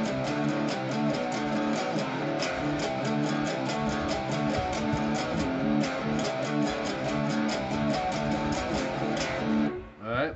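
Electric guitar in drop D tuning playing a driven power-chord riff, with a steady run of picked notes at an even level; the playing stops just before the end.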